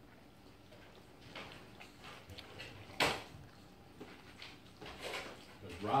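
Small dogs eating dry kibble from a plastic plate: scattered soft crunches and clicks, with one sharper click about three seconds in.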